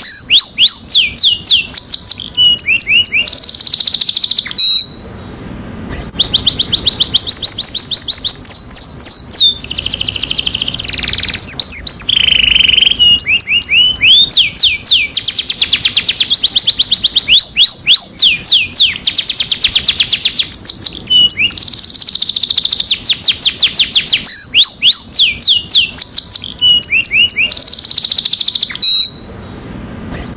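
Domestic canary singing: long runs of fast, evenly repeated high trilled notes, broken by short pauses about five seconds in and near the end.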